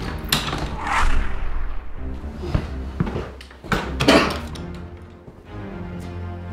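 Tense film score with a steady low drone, broken by several sudden hits, the first and the last followed by rising and falling noisy swells.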